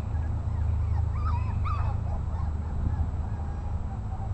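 Cairn terrier puppies giving a few short, squeaky whimpers about a second in, over a steady low rumble.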